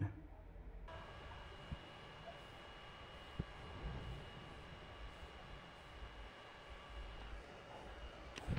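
Small handheld USB fan running steadily: a faint whir of air with a thin, steady motor whine. Two light clicks come about two and three and a half seconds in.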